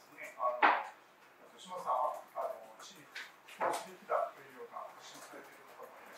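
Faint, intermittent speech from a voice away from the microphones in a small room, with a sharp knock about half a second in.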